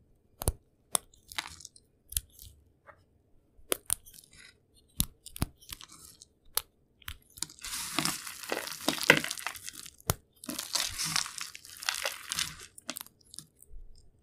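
Cut pieces of bar soap broken by hand: sharp single snaps as pieces are broken between the fingertips, then two longer stretches of dense crunching from about halfway through as a handful of pieces is squeezed and crushed.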